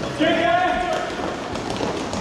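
A high-pitched shout held for about a second, a player or bench voice calling out across the rink, over the steady noise of play in a large hall.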